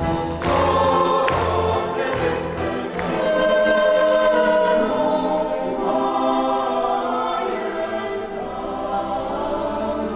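A mixed choir singing with a symphony orchestra. Sharp accented chords with a heavy bass fill the first three seconds, then the choir holds long sustained notes over the strings.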